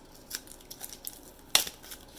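A cardboard card mailer taped shut with blue painter's tape being handled and pulled open: a run of short rustles and scrapes of cardboard and tape. One louder, sharp scrape comes about one and a half seconds in, as a card in a plastic holder slides out.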